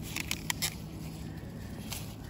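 Dry grass and plant stalks rustling, with a few short crackles in the first second and another near the end.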